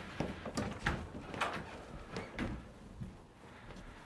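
Footsteps of two people walking across a carpeted room and out through a doorway: soft knocks about two a second, growing fainter near the end.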